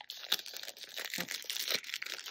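Foil wrapper of a Pokémon trading card booster pack crinkling and tearing as fingers rip it open along the top edge, a rapid irregular crackle.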